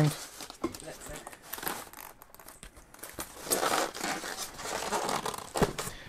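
Plastic packaging bags crinkling and polystyrene foam packing rubbing and clicking as parts are handled and pushed into a foam box insert. The rustling is irregular and gets louder and busier past the middle.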